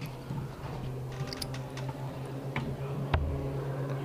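A steel-tip dart landing in a bristle dartboard with a short thud about three seconds in, among a few faint clicks. A steady low hum runs underneath.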